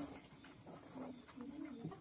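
Low cooing calls of a pigeon-like bird: a few short, steady notes and one near the end that rises and falls. A few faint clicks sound alongside.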